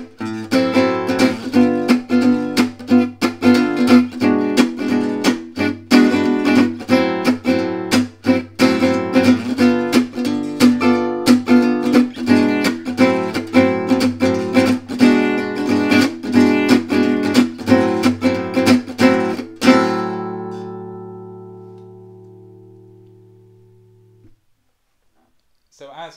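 Gypsy jazz acoustic guitar strummed on an Am6 chord in a deliberately bad la pompe rhythm, uneven with stray upstrokes, the way the rhythm should not be played. The strumming stops about 20 seconds in and the last chord is left ringing, fading out over about four seconds.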